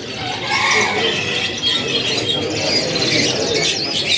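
Many caged canaries chirping and twittering at once, a dense tangle of overlapping high calls.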